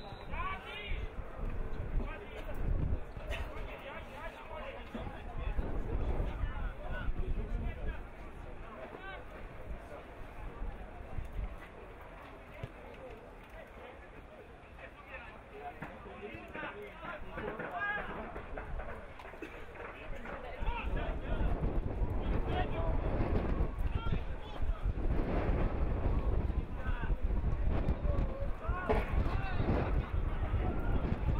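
Footballers and the bench calling and shouting on the pitch, distant and indistinct, over a steady low rumble that grows louder about two-thirds of the way through.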